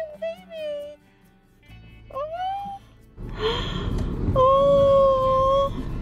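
Vocal exclamations: a short rising 'oh', then a long drawn-out 'ooh' held on one pitch for over a second. They are laid over background music and louder background noise from about halfway.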